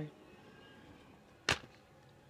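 A single sharp tap or click about one and a half seconds in, from handling during the unboxing, against a quiet room.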